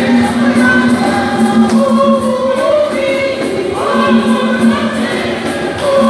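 A women's church choir singing a hymn together, several voices holding long notes and moving between pitches.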